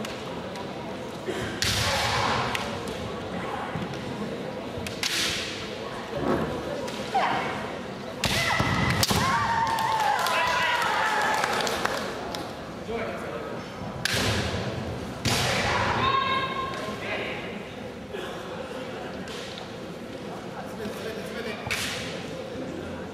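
A kendo bout: bamboo shinai clacking and striking, feet stamping on a wooden floor, and the fencers' kiai shouts, with several sharp strikes and long shouted cries around the middle.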